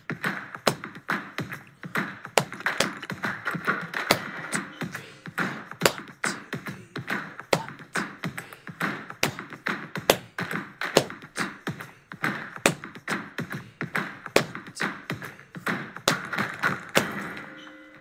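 Backing music with sharp hand claps and percussion taps, several a second, as layered parts of a four-beat clapping rhythm play against one another; it fades out near the end.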